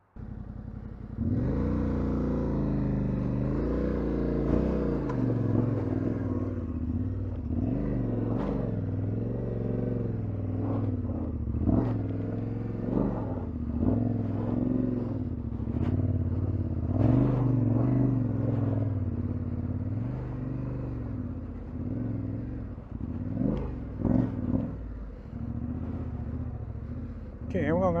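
Yamaha Ténéré 700's parallel-twin engine pulling at low speed, its revs rising and falling with the throttle as the bike is ridden slowly over a rough dirt trail. Occasional knocks come from the bike over rocks and roots, and the riding is clumsy enough that the rider paddles with his feet.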